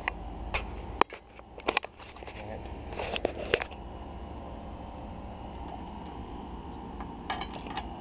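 A few sharp clicks and knocks, mostly in the first four seconds, over a steady low hum.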